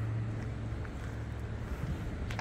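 Outdoor background noise with a steady low hum.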